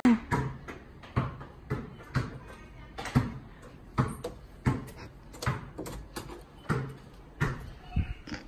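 Footsteps on a hard tiled floor: a short thud about every two-thirds of a second at a walking pace.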